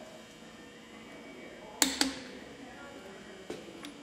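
Torque wrench and socket on an IH C-153 cylinder head bolt: two sharp metallic clicks a fraction of a second apart about halfway through, then a lighter click near the end.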